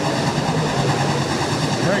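A field of USRA Stock Car V8 engines running at racing speed on a dirt oval, a steady drone.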